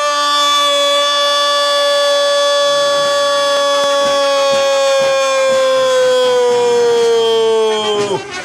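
A football commentator's long drawn-out "goooool" cry, held loud on one note for about eight seconds, its pitch sagging towards the end.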